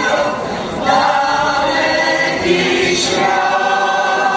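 Mixed choir of men's and women's voices singing slow, held chords. There is a short break for breath just under a second in, then the next phrase begins.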